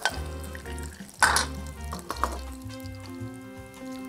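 Background music with long held notes, over a short clatter of metal tongs against a frying pan about a second in, and a smaller one a second later, as fried sausages are lifted out of the pan.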